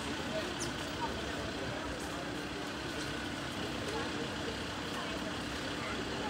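Street ambience by a queue of people: faint, scattered murmur of voices over a steady hum.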